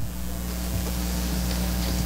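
Steady hiss with a low electrical hum underneath, even and unchanging throughout.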